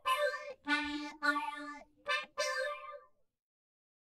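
Accordion reeds playing the last few notes of a melody. The notes are short and separate with brief gaps between them, and they stop a little after three seconds in.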